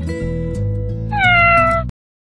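Background music with a single loud cat meow about a second in, sliding slightly down in pitch and lasting under a second. The music and the meow cut off abruptly just before the end.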